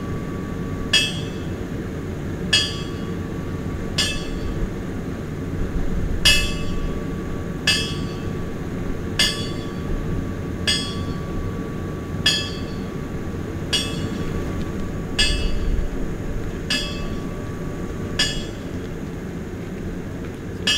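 A light metallic clink with a short ring, repeating evenly about every second and a half, over a steady low rumble.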